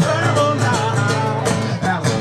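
Acoustic guitar strummed in a steady rhythm with a man singing over it.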